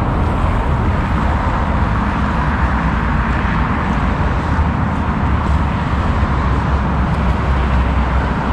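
Steady road traffic noise from passing cars, with a continuous low rumble.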